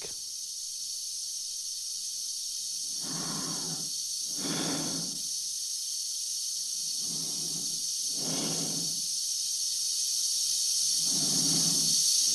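An astronaut's slow breathing inside a spacesuit helmet, breaths in and out about every four seconds, over a steady high hiss of the suit's air supply, as heard on a film soundtrack.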